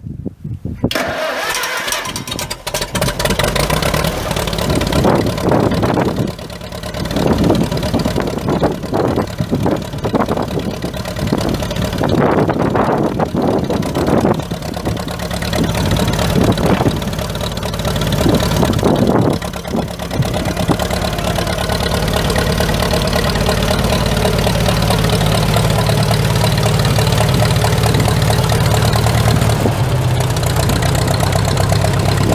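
Farmall M tractor's International 4.1-litre four-cylinder gas engine being started. It runs unevenly, rising and falling for about the first twenty seconds, then settles into a steady idle.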